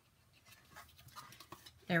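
Faint rustling and light taps of a cardstock sleeve and a clear plastic gum container being handled and fitted together, ending with a spoken "There".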